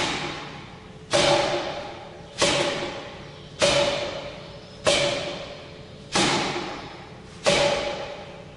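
Forearm strikes on a makiwara striking post (the "Shilov tuning-fork" makiwara) for forearm conditioning. There are six hits, about one every 1.3 seconds, each a sharp thud followed by a ringing tone from the post that fades over about a second.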